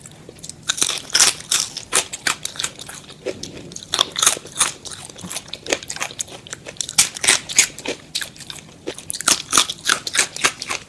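Close-up crunchy chewing of crispy french fries, a rapid run of sharp crunches starting about a second in, sped up to double speed.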